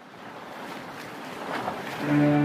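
Cartoon ocean sound effect: rushing sea water that swells louder, with a splash near the end.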